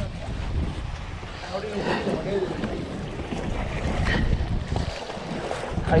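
Wind rumbling on the microphone, with sea water washing against jetty rocks underneath.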